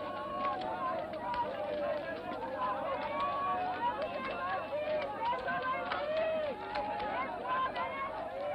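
Busy market crowd: many voices talking and calling over one another, with scattered faint clicks.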